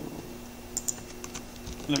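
Laptop keyboard keys being pressed: a few light clicks, a pair about three-quarters of a second in and two more a little later.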